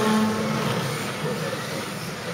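Kyosho Mini-Z electric RC car's motor and gears whining as it passes close by, the pitch dropping slightly as it fades away up the track.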